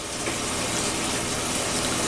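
A steady hiss over a faint low hum, with no clear event in it.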